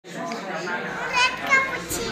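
A little girl talking in a high voice.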